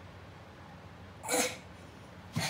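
A five-year-old boy's short, breathy grunt of effort as he strains through a pull-up, heard once about a second and a half in.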